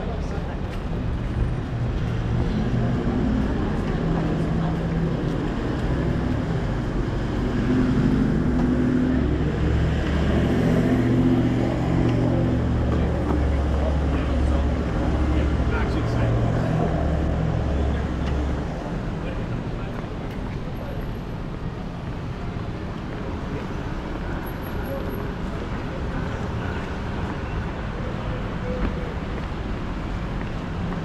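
City street traffic with passers-by talking. A heavy vehicle's engine drones low and steady through the first half and stops about two-thirds of the way through.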